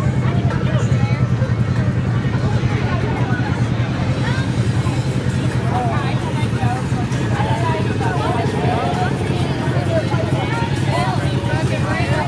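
A vehicle engine running steadily at idle close by, with people's voices chattering in the background, busier from a few seconds in.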